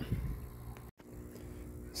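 Faint, steady low hum of background noise, cut off completely for a split second about a second in where the recording is edited.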